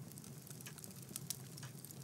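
Quiet room tone with faint, scattered small clicks.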